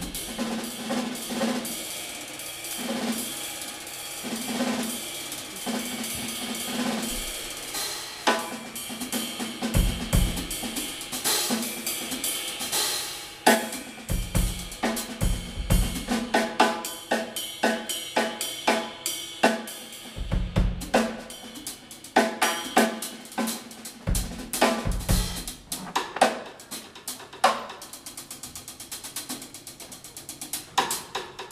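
Jazz band playing live, with the drum kit to the fore: snare, cymbals, hi-hat and bass drum, over piano and low bass notes. The drumming grows busier, with very rapid strokes near the end.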